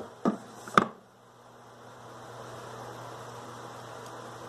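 Handling of a smartphone and its box: a short rustle, then one sharp click about a second in as the phone is set down. This is followed by a faint steady hiss with a low hum.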